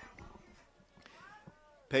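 A faint, drawn-out call about a second in, one pitched sound that rises and then falls, from a distant voice or animal.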